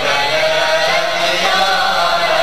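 Algerian Andalusian nouba ensemble: a chorus singing a melody in unison together with the orchestra's instruments, in long held notes.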